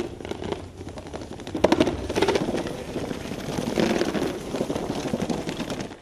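Books toppling one after another in a long domino chain: a fast, continuous clatter of small knocks that grows louder about one and a half seconds in.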